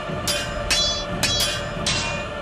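Sword blades clashing: about five sharp metallic clangs in quick succession, each ringing briefly, with music underneath.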